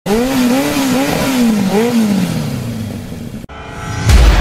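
An engine revving in quick rises and falls of pitch, then running down over about a second. It is cut off abruptly near the end.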